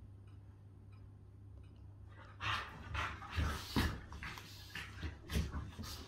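Two dogs, a large husky-type and a small terrier, play-fighting: after a quiet start, a run of short, noisy bursts of breath and scuffling begins about two seconds in.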